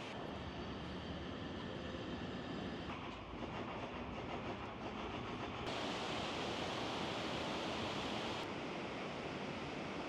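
Rushing water of a shallow mountain river tumbling over rocks and a small weir in a walled channel, a steady noise. It changes abruptly in loudness and tone three times, and is loudest a little past the middle.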